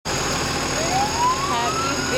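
Fire engine siren winding up, one tone rising steadily in pitch from about a second in, over the low rumble of a passing truck's engine.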